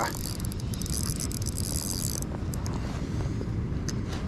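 Shimano Stella spinning reel's drag buzzing with rapid fine clicks as a freshly hooked fish strips line, stopping suddenly about two seconds in.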